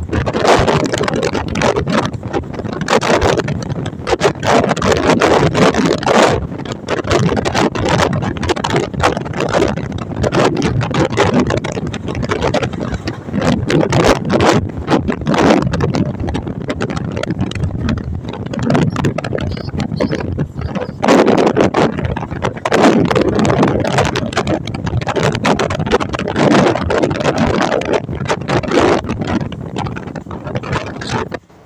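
Passenger train running, heard through an open carriage window: a loud, steady rumble with wind buffeting the microphone and frequent sharp knocks of track clatter.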